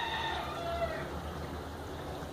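A single long bird call, rising slightly and then falling in pitch, ending about a second in.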